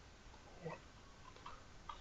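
Near silence: room tone with a few faint ticks and one small soft sound about two thirds of a second in.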